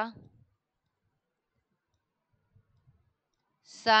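Near silence between spoken words, with a few faint low clicks about two and a half to three seconds in.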